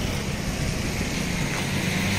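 Steady background noise of street traffic, an even rumble and hiss with no distinct events.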